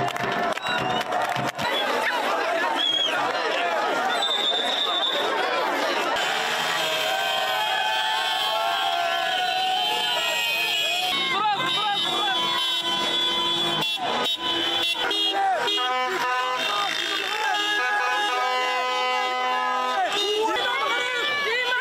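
Celebrating street crowd: many voices shouting and chanting together, with vehicle horns honking. Steady horn tones stand out more in the second half and most clearly in the last few seconds.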